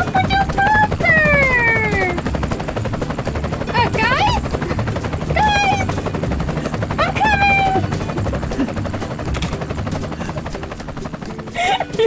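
Rapid, steady chopping of a helicopter rotor sound accompanying a toy helicopter being swooped through the air. Over it, a voice gives four squeals that slide down in pitch.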